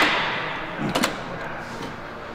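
Plate-loaded chest-supported row machine set down: a loud metal clank of the lever arm and weight plates at the start that rings and fades, then a second lighter clank about a second in.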